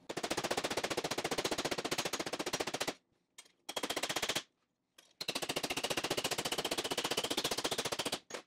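Hand hammer rapidly striking a sheet-steel flange held against a bench vise, a fast run of sharp metallic blows, about ten a second, stopping briefly twice. The hammering bends the flange around the vise's rounded part and shrinks it by hand.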